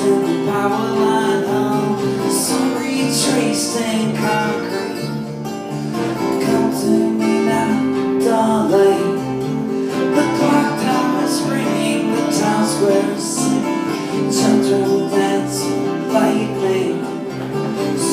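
Live acoustic band playing an instrumental passage without vocals: two acoustic guitars strummed and picked over an electric bass guitar, at a steady level.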